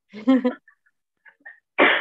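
A woman coughing: a short voiced sound early on, then one loud, harsh cough near the end.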